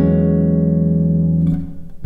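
Nylon-string Yamaha silent guitar played fingerstyle: one atonal chord held and left to ring, its upper notes fading about a second and a half in, with the next chord plucked right at the end.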